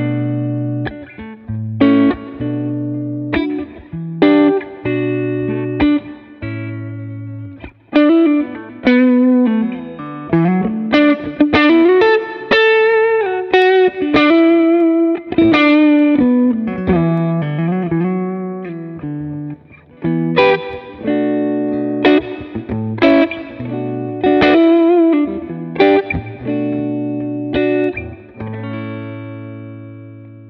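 PRS SE Hollowbody II Piezo electric guitar played on its magnetic pickups through a Line 6 Helix. Chords are struck about once a second, a melodic single-note passage with slides runs through the middle, and a last chord is left ringing as it fades.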